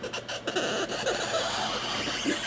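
Cardboard lid of a tight-fitting rigid gift box being slid up off its base, a steady rubbing of card on card that starts about half a second in.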